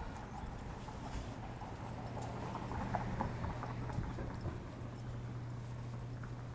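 Footsteps on a concrete sidewalk over a steady low hum of city street traffic.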